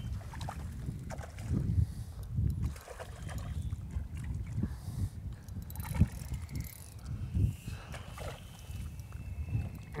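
Uneven low rumble of wind on the microphone, with a few brief splashes as a large hooked mullet thrashes at the water's surface, the sharpest about six seconds in.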